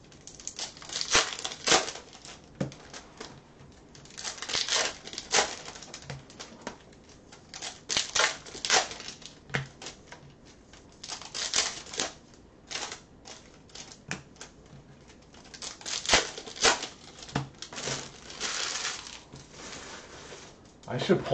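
Foil wrappers of Bowman Chrome trading-card packs crinkling and tearing as packs are opened, with the cards handled and sorted, in irregular bursts of rustling and clicks.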